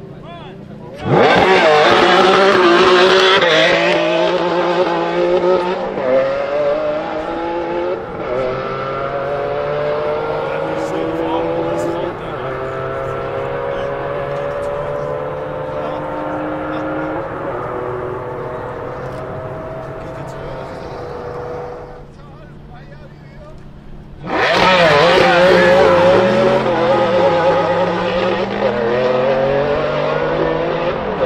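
Maserati MC12's V12 with a custom exhaust launching at full throttle alongside a Porsche Carrera GT, rising in pitch and shifting up through the gears several times, then fading as the cars run off down the runway. A second full-throttle launch starts abruptly about 24 seconds in.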